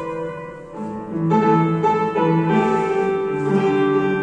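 Upright piano playing a melody over lower notes. The playing softens briefly about a second in, then carries on fuller.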